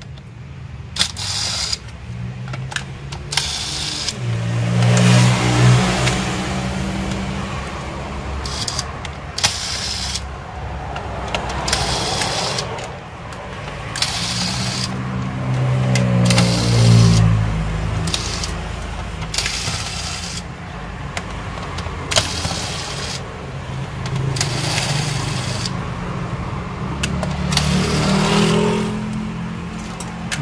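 Electric screwdriver running in several bursts of a few seconds each, its motor pitch rising and falling as it backs out the laptop's base screws, with sharp clicks and taps between runs.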